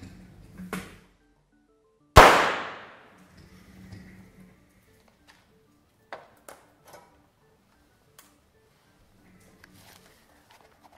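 Soap bubbles filled with a stoichiometric 2:1 hydrogen–oxygen mixture ('dynamite soap') ignite and explode in a single loud, sharp bang about two seconds in, ringing briefly in the room. The bang is far louder than the squeaky pop of pure hydrogen because the gases are in the correct proportions.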